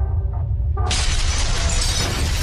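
Logo-intro sound effects: a steady deep rumble, joined about a second in by a loud crash of shattering, breaking debris that carries on.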